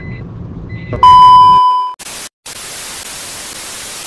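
A TV test-pattern sound effect. A low hum with short high beeps about a second apart gives way to a loud, steady test-tone beep lasting about a second. Then comes a hiss of TV static, cut by a brief gap.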